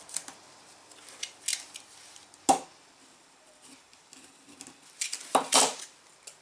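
A thin plastic strip cut from a plastic bottle crackling and clicking as fingers fold and crease it. There is a sharp click about two and a half seconds in and a cluster of crinkles near the end.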